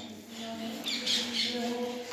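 A bird squawking, a raspy call about a second in, over a steady low hum.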